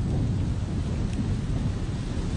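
Wind buffeting an outdoor microphone: a steady low rumble with an even hiss over it.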